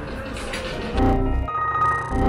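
Background room noise, then about halfway through a comedic edited-in electronic sound effect cuts in: a low rumble followed by steady, ringtone-like beeping tones, a computer-error meme sound.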